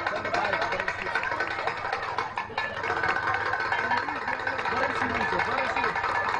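Several voices talking over one another with music playing underneath, a steady mix with no pauses.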